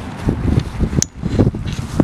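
Wind buffeting the microphone in irregular low gusts while a plastic grocery bag rustles in a small child's hands as he opens it, with one sharp click about a second in.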